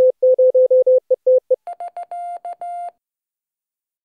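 Morse code sent as a keyed audio tone: a steady mid-pitched beep in dots and dashes, then a short run in a higher, buzzier tone that stops about three seconds in.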